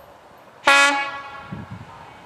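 Railcar's horn giving one short blast about two-thirds of a second in, a warning as it approaches the level crossing. The blast fades out quickly.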